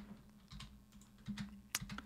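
Faint clicks of computer keyboard keys being pressed: several separate keystrokes, the sharpest near the end.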